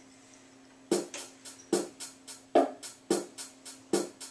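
Programmed drum-machine beat starting about a second in: a steady rhythm of stronger hits roughly every second with lighter ticks between, the intro of a backing pattern for a song.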